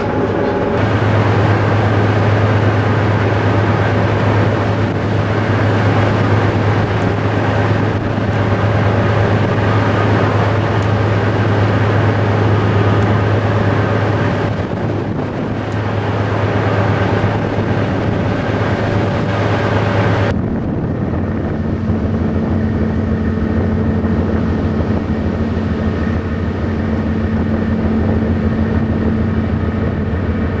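A fishing trawler's engine running with a steady low drone, under wind and water noise. About two-thirds of the way through the tone changes: the hiss thins and a higher steady hum comes in.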